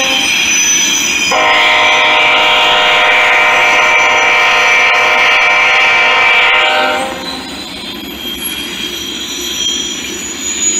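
Norfolk Southern freight train's air horn sounding one long multi-tone blast from about a second in until about seven seconds, as the GE locomotives pass close by. After the horn stops, the freight cars roll past with steady rail noise and high wheel squeal.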